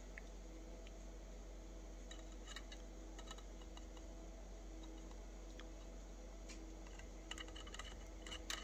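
Faint, scattered light clicks over a faint steady hum as a homemade magnet-driven rotor turns slowly toward its firing point, with a quicker run of clicks near the end.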